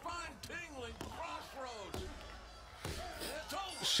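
Wrestling broadcast audio: the referee slaps the ring mat for the pinfall count, a few sharp thuds about a second apart, under the TV commentators' talk.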